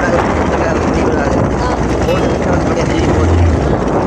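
Small motorboat's engine running steadily under way, a continuous low rumble.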